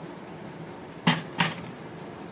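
Two brief clattering knocks of kitchen utensils being handled, a quarter second apart, about a second in, over a low steady room hum.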